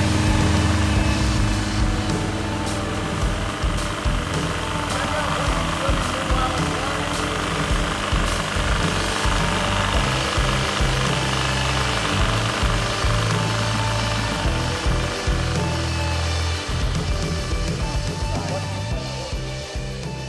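A 1979 Triumph Spitfire's freshly swapped engine running just after it starts, heard under background music.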